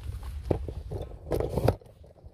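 Handling noise from the phone or camera being moved about: a few sharp knocks and rustles over a constant low rumble. The loudest cluster comes near the end, and then it drops away.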